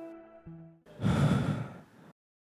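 A man sighs: one long, breathy exhale about a second in, after soft background music fades out.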